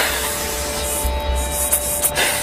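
Perfume sprayed from the mouth in a fine mist during a ritual purification, heard as a sustained hissing rush.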